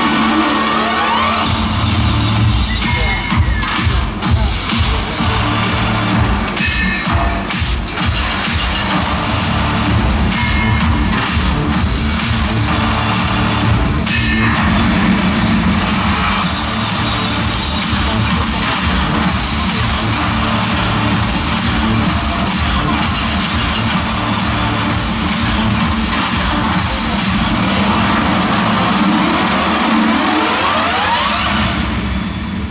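Loud show soundtrack: music mixed with heavy machinery-like sound effects over a fast, steady low pulsing.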